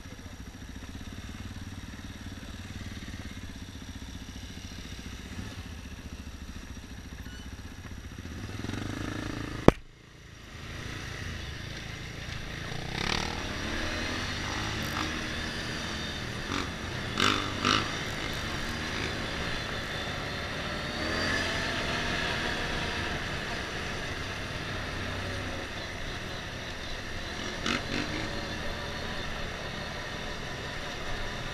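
A motorcycle engine idles steadily, then a sharp click comes about ten seconds in. After that the bike pulls away and rides over a cobblestone street, its engine pitch rising and falling through the gears.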